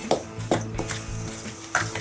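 Wooden spoon stirring dry flour, cocoa, sugar and almond meal in a stainless steel bowl, with a few brief scrapes and knocks against the bowl, over steady background music.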